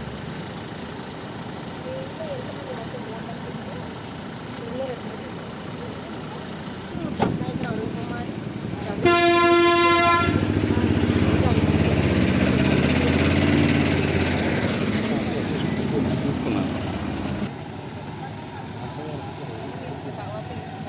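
A vehicle horn toots once, held for about a second, about nine seconds in. It is followed by several seconds of a motor vehicle running close by, which cuts off abruptly near the end, over faint voices.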